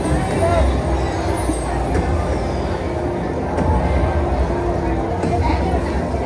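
Slot machine bonus-feature music and game sounds, with a deep low rumble and held tones, over steady casino chatter.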